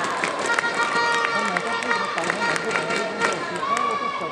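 Badminton play in a sports hall: short squeaks of shoes on the court floor and sharp clicks, under the voices of spectators.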